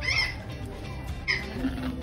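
Two short macaw calls, the first right at the start and the second a little over a second in, over background music.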